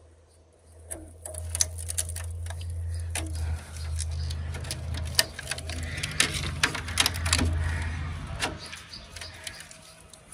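A steel bar clicking and scraping irregularly against the copper end windings of a large generator stator as a hole is worked through them. Underneath runs a steady low hum that stops about eight and a half seconds in.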